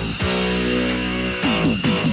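Rock-style soundtrack music with guitar: a held chord, then a quick run of falling notes near the end.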